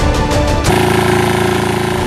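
Background music, joined less than a second in by the fast, even chugging of a small engine, plausibly a walk-behind two-wheel tractor running. The chugging stops at the end.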